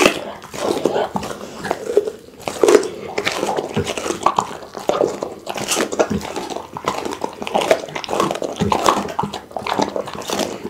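Pit bull chewing and smacking its lips close to the microphone: a steady run of irregular wet clicks and smacks.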